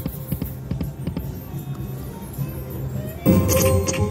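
Video slot machine playing its game music and reel-spin sounds, with small ticks as the reels run. A louder burst of pitched game sound comes about three seconds in, as the reels land.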